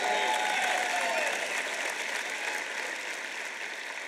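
A large audience applauding, the clapping gradually dying away, with a few voices calling out near the start.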